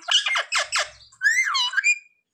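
Rose-ringed parakeet calling: a quick run of raspy squawks, then a warbling call that wavers up and down in pitch.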